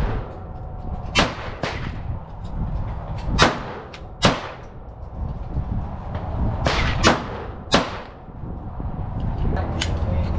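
Pistol shots from more than one shooter on a firing line: about eight sharp cracks at irregular intervals, some louder and nearer than others.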